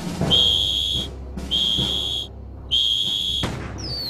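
Three long blasts on a pea-less military whistle, each a steady high note with short pauses between: an assembly signal calling the troops to fall in. Near the end a short falling whine starts.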